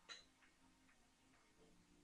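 Quiet light ticking from wooden drumsticks: one sharp click just after the start, then a few faint taps about twice a second.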